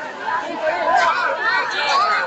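Crowd chatter: many children and adults talking at once, with high-pitched voices overlapping.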